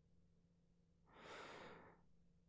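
Near silence, then about a second in a single soft, breathy sigh from a man's voice, close to the microphone, lasting under a second.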